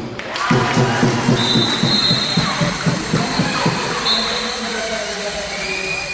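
Handball spectators cheering and shouting in a sports hall, over a fast run of beats. A long high whistle sounds about a second and a half in, briefly again near the middle, and another steadier tone comes near the end.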